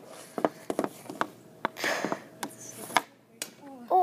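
Hockey stick shot off a plastic shooting pad: several sharp knocks and clacks of the stick blade striking the pad and puck, with the puck hitting the net or the ground.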